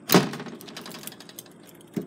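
An old door bangs once with a loud thunk just after the start, ringing out briefly. A short click from the door's handle or latch comes near the end.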